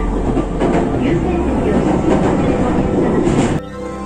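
Moving train's running noise heard from inside the carriage: a steady rumble with the clatter of wheels over rail joints. It cuts off sharply about three and a half seconds in, giving way to music.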